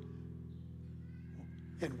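A soft, steady sustained chord of background music, its low notes held unchanged, with a man's voice coming back in just before the end.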